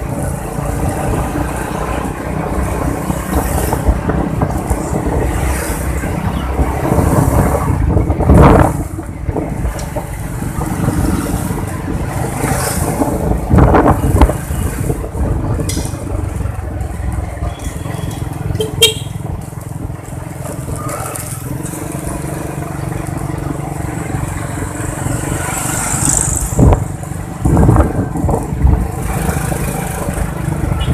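Motorcycle riding along a street, heard from a phone mounted in the rider's helmet: steady engine and wind noise, with a few short louder surges.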